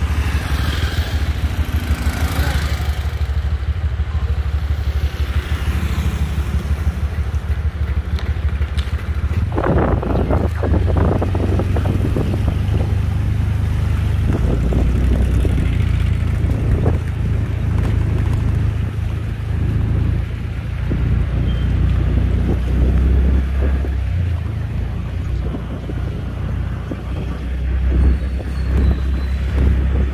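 Motorcycle engine running steadily while riding along a street, heard from on the bike, with a few brief rougher bursts of noise about ten seconds in.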